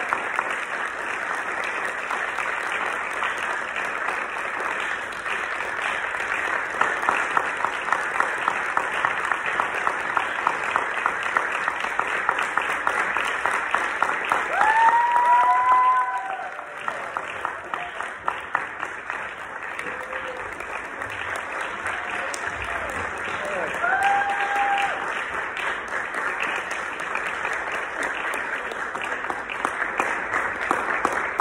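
Audience applauding steadily in a hall, swelling for a couple of seconds about halfway through and then easing off a little. A few voices call out over the clapping about halfway through and again later.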